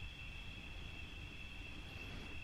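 Quiet background: a steady, high-pitched, even drone of crickets over a faint low rumble.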